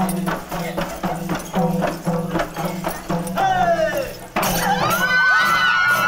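Programme theme music with a quick, regular drum beat over a low drone, and a falling gliding tone a little past the middle. About four and a half seconds in, it cuts abruptly to louder high whooping and shouting voices.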